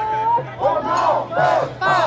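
Protest crowd shouting a chant: one held call, then loud, repeated shouted bursts from many voices.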